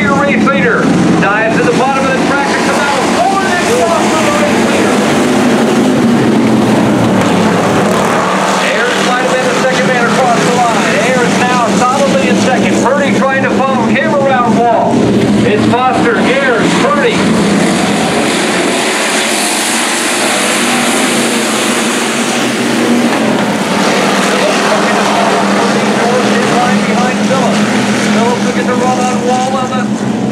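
A pack of hobby stock race cars running flat out around a dirt oval. Their engines overlap in a constant loud drone, with revs that rise and fall as cars pass and lift for the turns.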